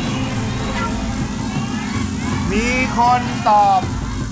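A steady low rumble runs throughout. About halfway in, a person's voice speaks a few words in Thai.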